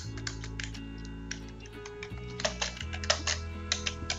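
Typing on a computer keyboard: irregular key clicks, busier in the second half, over steady soft background music.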